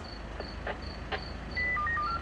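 A cricket chirping steadily, a short high chirp about three times a second, over a low steady hum. Near the end comes a quick run of four short electronic beeps at different pitches, and there are a few faint clicks.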